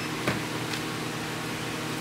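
Steady hum and hiss of room ventilation fans, with a short faint beep right at the start, typical of a handheld barcode scanner reading a label.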